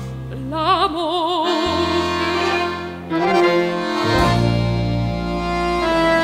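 Accordion playing held chords over long sustained bass notes. A woman's operatic voice sings a short phrase with wide vibrato about a second in, then drops out.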